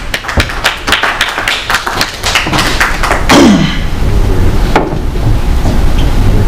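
Small audience applauding, scattered claps that die away after about three seconds, followed by a brief louder falling sound.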